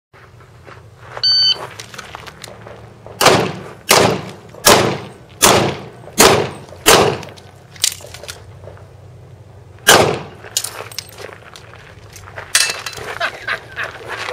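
An electronic shot timer gives one short start beep, then a pistol fires a run of six shots about three-quarters of a second apart, one more shot about ten seconds in, and smaller knocks and clatter near the end.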